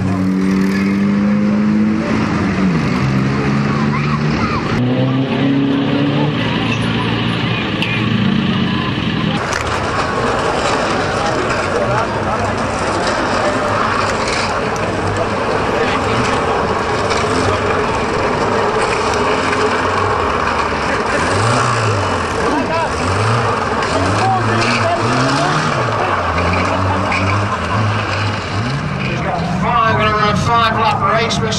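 Banger-racing car engines running and revving, the pitch rising and falling again and again over a dense, rough mechanical noise.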